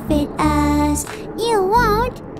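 A children's song: a sung vocal line, heard as a child's voice, over backing music, ending on a held note that wavers in pitch.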